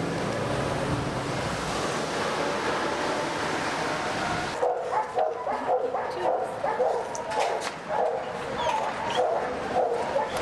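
A steady rushing background noise, then, after an abrupt change about halfway in, dogs barking over and over in short, fairly high-pitched barks.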